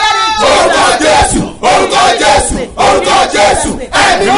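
A man and a woman shouting prayers loudly together, their raised voices overlapping.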